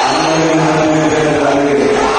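A man's voice through a PA holds a long chanted call on one steady pitch, with a brief break partway, over the steady noise of a large crowd.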